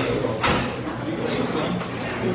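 A metal knife clinks sharply once against a plate about half a second in, while the diner cuts his food, over a murmur of voices.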